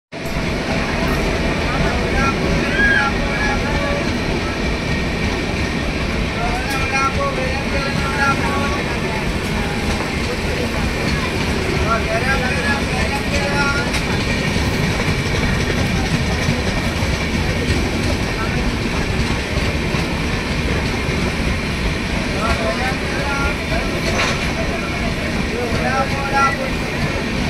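Passenger train hauled by a WAP-7 electric locomotive rolling slowly into the station on an adjacent track: a steady, continuous rumble, with indistinct voices over it now and then.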